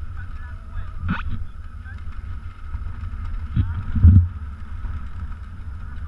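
Low rumble of dirt bikes waiting at a motocross start line, heard through a helmet-camera microphone, with a short sharp sound about a second in and a louder low bump about four seconds in.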